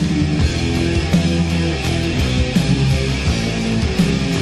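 Instrumental passage of a heavy metal song: loud electric guitar riffing over bass and steady drum hits, with no singing.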